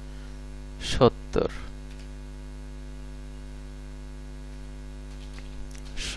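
Steady electrical mains hum picked up by the recording microphone, a low buzz made of several fixed tones. About a second in, two short spoken syllables cut through it.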